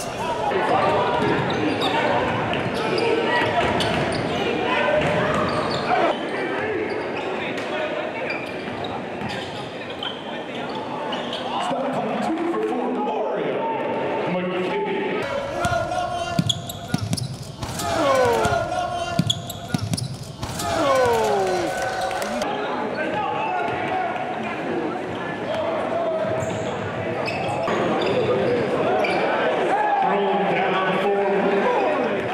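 Live gym sound of a basketball game: a ball dribbling on a hardwood court amid players' and spectators' voices, with a few falling squeaks around the middle.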